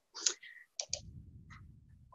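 A few faint, short clicks on a computer as the presentation slide is advanced, with a faint low hum setting in about a second in.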